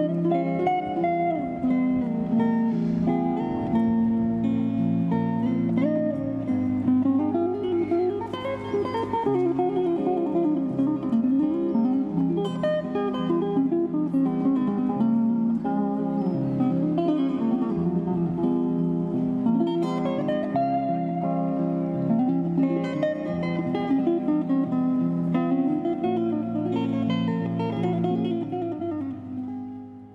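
Solo acoustic guitar instrumental: picked melodic runs over ringing bass notes, fading out near the end.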